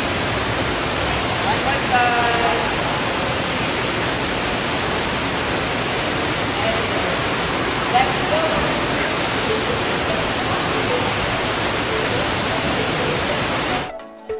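Steady rushing of water pouring from an artificial rock waterfall into a shallow indoor pool, with children's voices calling out now and then, one high call about two seconds in.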